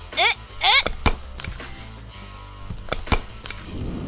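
A stapler clacking twice, about a second in and again near three seconds, as it fastens the panels together, over background music.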